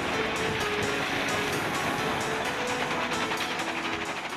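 Broken rock tipping from a truck body into a crusher feed hopper, a steady clattering rattle of stones, over faint background music.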